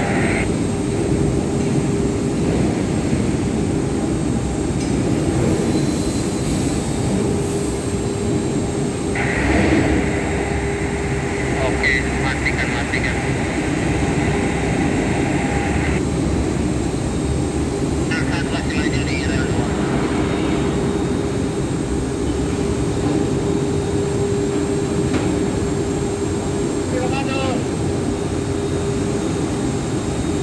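Steady, loud industrial machinery rumble with a constant hum, with a few brief faint high-pitched squeals or distant voices over it.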